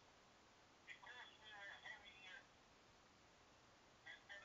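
Faint voice of the other caller on a mobile phone call, coming through the phone's speaker with a thin, band-limited telephone sound. It speaks for about a second and a half, starting about a second in.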